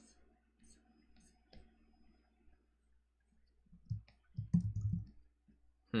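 Computer input clicks and taps at a desk while drawing digitally: scattered faint clicks, then a cluster of dull taps about four seconds in lasting around a second.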